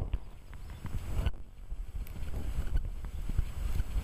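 Wind rumbling on the microphone, with a few faint soft thuds from a horse's hooves on the arena surface.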